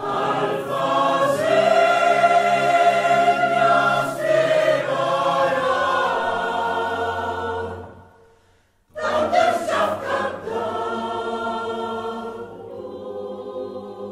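Mixed choir of men's and women's voices singing a long held chord that dies away about eight seconds in. After a short silence the choir comes back in loudly and sings on.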